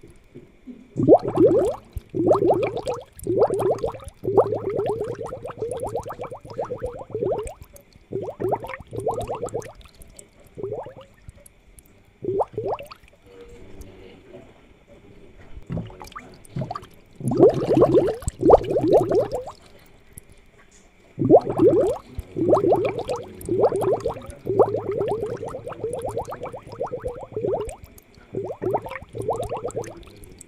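Aquarium air bubbles gurgling in the water, in irregular bursts of quick upward-sliding blips with a couple of short lulls. A faint steady high hum runs underneath.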